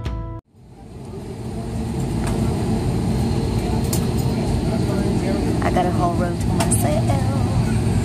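Steady low cabin noise of a jet airliner fading in and holding after background music cuts off about half a second in, with faint voices in the background.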